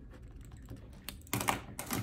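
Ballpoint pen writing on paper: a quick run of short scratching strokes starting about a second in.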